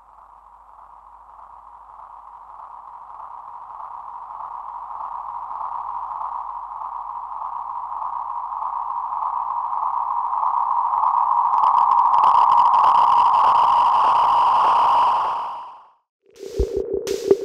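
Feedback tone from a passive matrix mixer patched in a simple feedback loop: one steady mid-pitched whistle that swells slowly louder. From about twelve seconds in it turns brighter, gaining higher overtones, then it fades out near the end.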